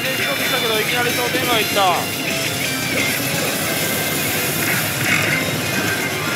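Pachislot machine (Oh! Bancho 3) playing its music and sound effects, with gliding electronic tones in the first two seconds, over the dense, steady din of a pachinko parlor.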